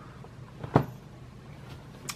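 Low steady room hum, broken by one short knock about three quarters of a second in and a fainter tick near the end.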